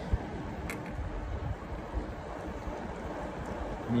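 Wind rushing over the microphone and tyre noise on asphalt from an electric bike riding at about 15 mph: a steady rushing noise with a few faint ticks.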